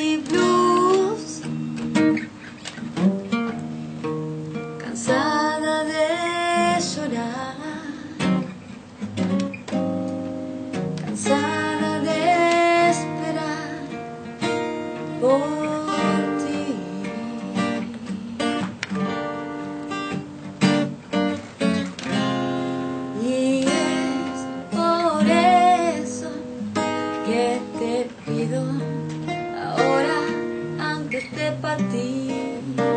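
Acoustic guitar playing a blues, strummed and picked, with a bending melody line above the chords at several points.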